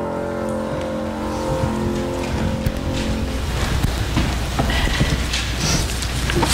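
The last chord of a hymn rings out and fades away over about the first three seconds. Then comes a rustling, shuffling din of a congregation sitting down and settling in the pews, with scattered knocks and creaks.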